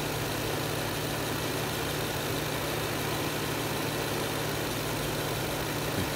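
A Lexus LS 430's 4.3-litre V8 idling steadily and smoothly, heard from just above the open engine bay.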